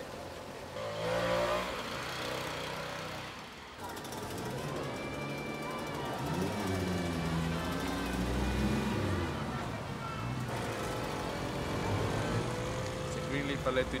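Film soundtrack mix of a Lambretta C scooter's small two-stroke engine running, with its pitch rising and falling, under street sounds and background voices. The sound changes abruptly at picture cuts about four and ten seconds in.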